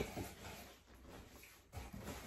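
Empty cardboard shipping box being handled and pushed across a bed: a sharp knock at the start, then cardboard scraping and rustling, with another small knock near the end.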